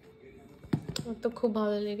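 A few sharp clicks and taps from a chunky-soled leather boot being handled and turned over, followed by a woman's held voice sound near the end.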